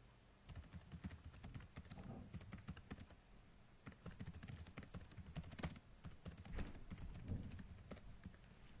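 Typing on a computer keyboard: a faint run of irregular keystrokes that starts about half a second in.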